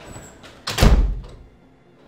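A room door shutting with one heavy thud about two-thirds of a second in.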